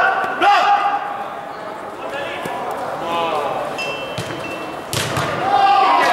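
Football players' shouts echoing in an indoor sports hall, with a sharp thud of the ball being struck about five seconds in, followed by louder shouting.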